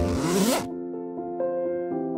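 A zipper on a striped cloth bag pulled shut in one quick pull, rising in pitch and stopping about half a second in. Soft background music with sustained notes plays underneath.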